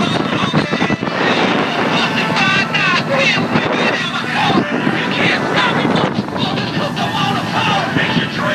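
Boat running fast over open water, a steady din of engine, rushing water and wind on the microphone, with voices raised over it several times.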